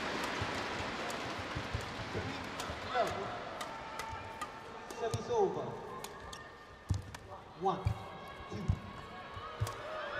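Badminton rally on an indoor court: sharp racket strikes on the shuttlecock, shoe squeaks on the court floor and footfalls. These play over crowd noise that slowly dies down as the point goes on.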